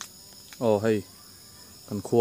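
Steady high-pitched chorus of crickets or other insects. It is broken twice by short, louder voice sounds with falling pitch, about half a second in and near the end.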